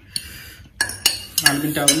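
Metal forks clinking and scraping against plates while noodles are eaten, with a run of several sharp clinks in the second second.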